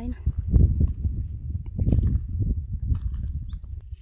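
Wind rumbling on the microphone of a hand-held camera carried outdoors, with a few heavier thumps about half a second and two seconds in.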